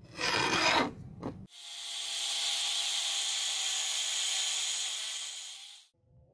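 Hands rubbing and handling a rusty wooden knife handle, a short scraping burst about a second long. It is followed by a steady hiss, with faint steady tones in it, that lasts about four seconds.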